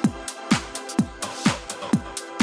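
House music: a steady four-on-the-floor kick drum at about two beats a second, each kick dropping in pitch, over sustained synth chords with cymbal hits between the beats.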